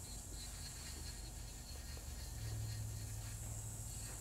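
Electric nail drill (e-file) running with a diamond ball bit against the skin at the cuticle, a faint steady hum that grows a little stronger about halfway through.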